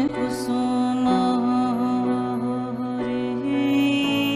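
Slow, meditative background music in a devotional, chant-like style: long held notes over a steady low drone, with small bends in the melody.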